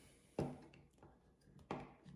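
Light clicks from the housing of a utility knife being handled as it is taken apart, about half a second in and again near the end.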